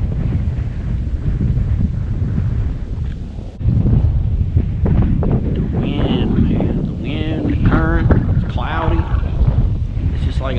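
Wind buffeting the microphone: a loud, dense low rumble that eases briefly about three and a half seconds in and then comes back as strong as before.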